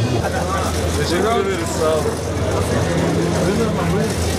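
Voices of people talking close by in a crowd, over a steady low drone.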